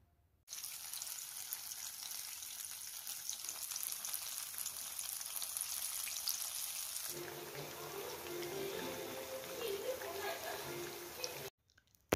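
Batter-coated banana fritters deep-frying in hot oil in a kadai: a steady, dense sizzle and crackle of bubbling oil. It starts suddenly about half a second in, softens about seven seconds in, and cuts off just before the end.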